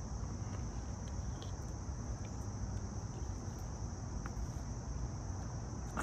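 Crickets chirping outdoors, a steady high-pitched trill that runs unbroken, over a low background rumble, with a few faint clicks.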